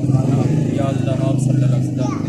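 A small engine running steadily nearby, its low pulsing hum unbroken, with a man's voice reciting a prayer over it.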